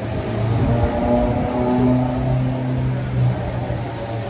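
A motor running with a steady low hum that holds nearly one pitch, fading a little before the end.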